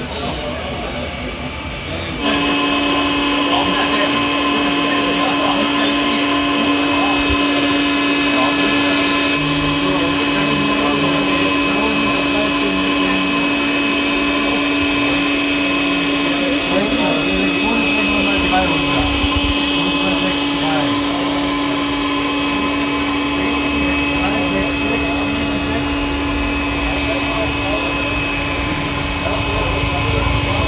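Remote-controlled scale street sweeper model running its sweeping gear: a steady hum with higher whining tones switches on suddenly about two seconds in and holds unchanged. Crowd chatter runs underneath.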